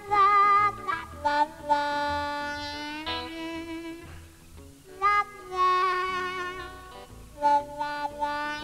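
Blues harmonica solo over the band's bass and drums: phrases of long held notes, several bent up into pitch at their start and one wavering near the beginning, with short breaths between phrases.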